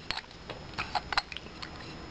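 Handling of a perfume bottle's gold cap: a few light, irregular clicks and taps as the cap is fitted over the sprayer and lifted off again.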